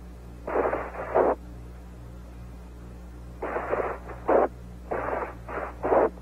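Bursts of static and hiss on the mission-control radio loop, narrow like a radio channel, coming in three groups: one about a second in, then two more close together in the second half. A steady low hum runs beneath.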